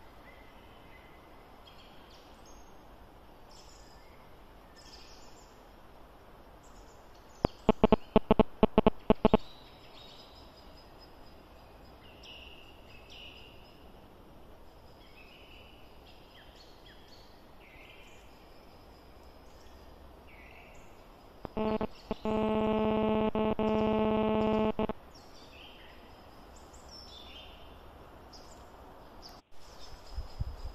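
Small birds singing and chirping in woodland, with a quick run of loud clicks about a quarter of the way in. Later a loud steady tone with several overtones holds for about three seconds and then cuts off.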